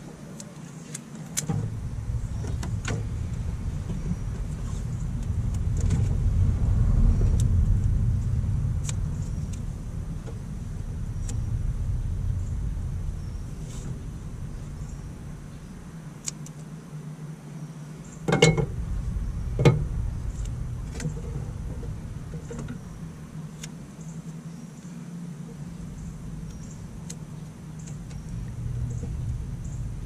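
Light clicks and rustles of insulated wires and electrical tape being handled while a harness is bundled, with two sharper clicks a little past halfway. Under it runs a low rumble that swells and fades.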